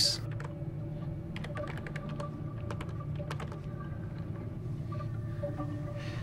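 Computer keyboard typing in short, irregular runs of key clicks over a steady low hum.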